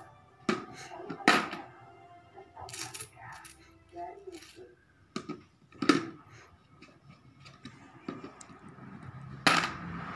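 Coins clinking as they are picked up from a pile and dropped one at a time into a plastic coin bank: about five sharp metallic clinks at uneven intervals, the loudest about a second in, around six seconds in and near the end.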